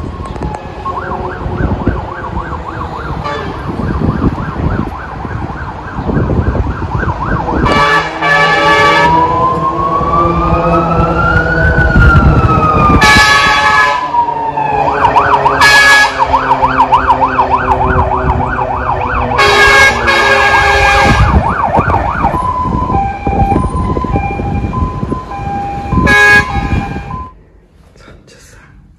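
Emergency vehicle siren, loud, sounding a fast warbling yelp, then one slow rising-and-falling wail around the middle, then the fast yelp again. Several short air-horn blasts cut in over it, the longest about two-thirds of the way through.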